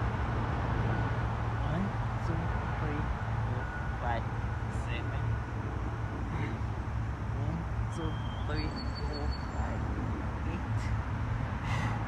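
Steady low rumble of distant road traffic, with faint short chirps scattered through it.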